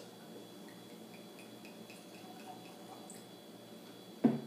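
Whiskey being poured from a bottle into a tasting glass: faint gurgling blips, about four a second, that stop about three seconds in.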